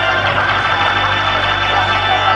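Organ music playing loud, held chords over a steady low bass note.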